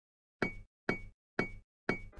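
Four sharp knock sound effects, evenly spaced about half a second apart, each with a short high ring, marking the letters of an animated title logo popping into place.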